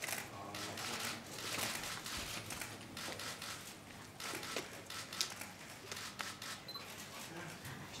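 Press photographers' camera shutters clicking many times at irregular intervals.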